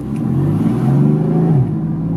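BMW M4's twin-turbo straight-six heard from inside the cabin, accelerating gently on a throttle held back by the pedal box's restricted kids mode. Its pitch climbs for about a second and a half, then falls back and holds steady.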